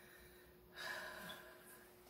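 A person's short breath out, about a second in, with near silence on either side.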